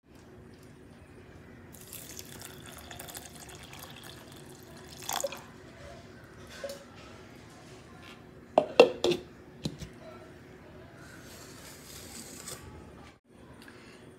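Water running for a few seconds, then a few sharp clinks of kitchen utensils, and a second short run of water near the end.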